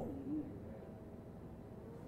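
Quiet room tone with a low steady hum. Just after the start there is a brief low hum-like vocal sound, and a faint thin steady tone comes in about a third of the way through.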